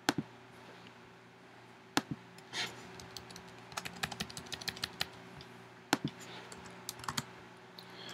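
Keys typed on a computer keyboard in a short quick run about halfway through, with a few single sharp clicks spread around it, over a faint steady hum.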